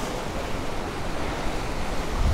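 Gulf surf washing against the rocks of a jetty, a steady rush of water, with some wind rumble on the microphone.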